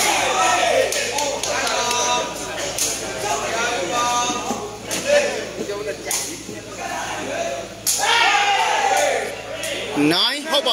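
Men's voices talking and calling out over the crowd, with a few sharp smacks of a sepak takraw ball being kicked.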